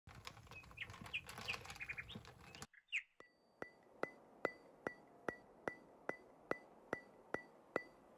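Birds chirping for the first few seconds, then a knife slicing strawberries on a plastic cutting board: even, sharp taps of the blade on the board, about two or three a second, each with a short ping.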